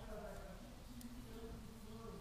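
A faint low hum with one soft tick about a second in.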